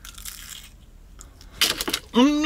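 A bite into a crisp pastry turnover, crunching softly, followed near the end by a quick cluster of sharp clicks and crinkles.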